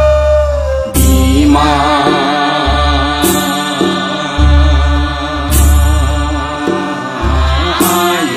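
Bodo Bathou devotional song: a held instrumental note gives way, about a second in, to a voice singing one long wavering line. Beneath it runs a heavy drum beat, with a crash about every two seconds.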